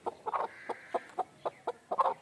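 Domestic hen clucking in a steady run of short, quick clucks, about four a second.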